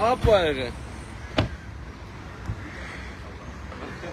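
The door of a Lexus SUV being pushed shut, closing with one sharp slam about a second and a half in, over a steady hum of street traffic.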